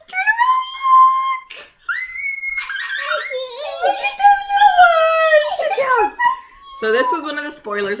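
Young children's high-pitched squeals and drawn-out vocal sounds, with several voices overlapping in the middle and ordinary talking near the end.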